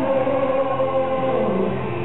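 Male singer singing a slow ballad live into a handheld microphone over musical accompaniment, with long held notes.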